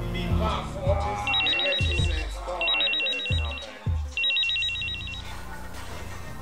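Phone ringing three times, each ring a fast warbling electronic trill lasting about a second, over trailer music with low drum hits that drop in pitch.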